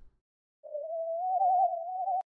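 A single sustained synthesized harmony note played back from RipX DeepAudio's Harmonic Editor, thinned by a low-pass filter. It starts about half a second in, steps up slightly in pitch and wobbles with added vibrato, a warbly, theremin-like tone.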